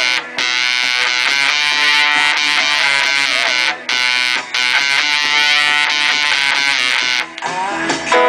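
Epiphone Casino electric guitar played through a 1968 Maestro Fuzz-Tone FZ-1B pedal into a Fender '57 Twin amp: loud, harsh fuzz-distorted notes held in long sustained stretches, broken by a few brief stops.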